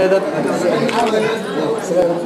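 Chatter of several people talking at once, voices overlapping.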